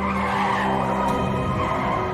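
Car tyres screeching as a vehicle skids, lasting about two seconds, with background music underneath.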